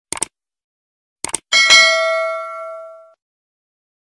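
Subscribe-button sound effect: two quick mouse clicks, two more about a second later, then a single bell ding. The ding is the loudest sound and rings on for about a second and a half, fading away.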